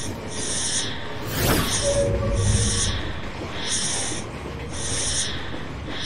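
Sound effects for a motion-graphics intro: a series of hissing swishes roughly once a second, with one sweeping whoosh about a second and a half in.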